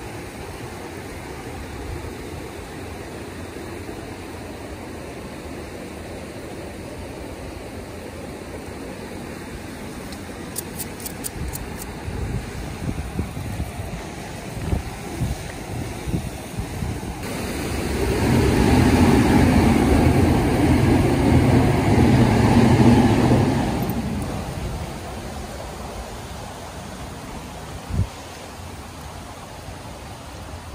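Outdoor street noise with wind buffeting the microphone in low thumps; past the middle a vehicle passes, its rushing noise swelling for several seconds and fading away.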